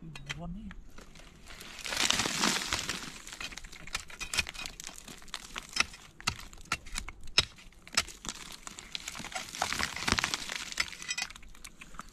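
A long steel pry bar striking and levering at layered rock, giving sharp clicks and knocks of metal on stone. Two longer spells of scraping and crumbling rock come about two seconds in and again near the end.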